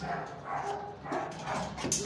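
Dogs barking and yipping in shelter kennels, in short repeated calls, with a sharp click near the end.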